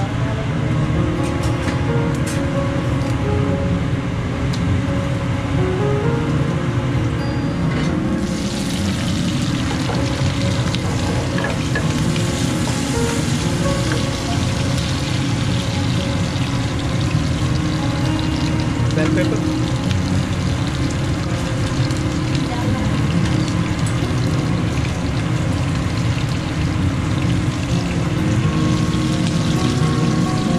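Cumin seeds and chopped green pepper sizzling in hot oil in a frying pan on a gas burner; the hiss starts about eight seconds in when they go into the oil and keeps going. A steady low hum runs underneath.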